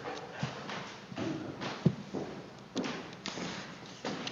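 Footsteps and knocks on a wooden floor in a large room, with a sharp knock about two seconds in, under faint indistinct off-microphone voices.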